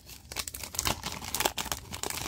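Foil wrapper of an Upper Deck hockey card pack crinkling as it is pulled open by hand, a run of irregular crackles.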